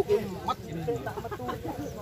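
Several people's voices talking over one another, loudest near the start and settling into a lower murmur.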